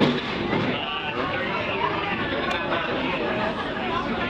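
Crowd of shoppers talking at once, a steady babble of overlapping voices in a busy fish market hall.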